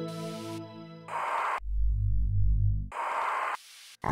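Soft ambient music chord ends about a second in, giving way to electronic sound effects as the robot moves: a short burst of hiss, a loud low pulsing hum, then a second burst of hiss.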